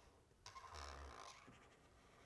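Faint marker pen writing on flipchart paper: one scratchy stroke starting about half a second in and lasting about a second, then a few light ticks of the pen tip.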